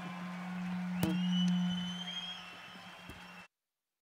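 Acoustic guitars ringing out on a held final chord and slowly fading, with one more note plucked about a second in that rings high above it. The sound cuts off suddenly near the end.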